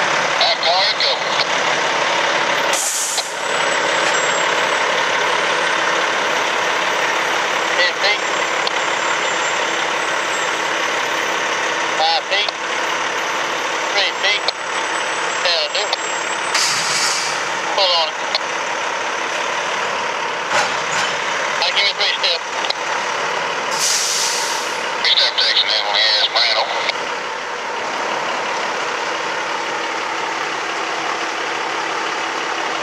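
Brandt road-rail truck's engine running steadily as it moves a cut of gondola cars, with three loud hisses of air brakes venting and brief high-pitched squeals from the moving cars.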